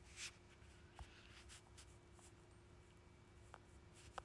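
Near silence: room tone with a faint steady hum and a few soft, small clicks.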